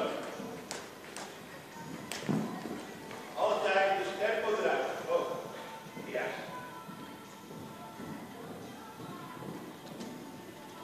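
Horse's hooves thudding on the sand footing of an indoor arena as it canters a jumping course, with a few sharp knocks early on and a heavier thud about two seconds in. Voices and music in the hall carry over it.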